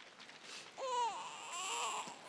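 A newborn baby crying: a wavering wail that begins just under a second in and falls in pitch, followed by further short cries.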